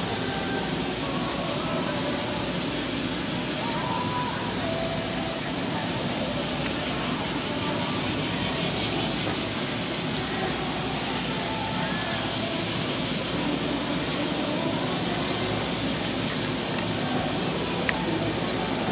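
Steady open-air ambience of a sports venue: an even wash of background noise with faint, distant voices.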